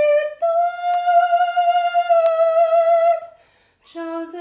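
A woman singing a hymn unaccompanied, holding one long high note for nearly three seconds, then a brief breath pause near the end.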